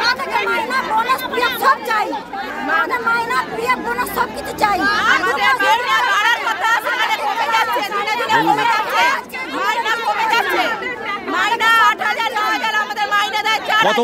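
A crowd of women shouting and talking over one another at once, several loud voices overlapping without pause: protesters airing their grievances together.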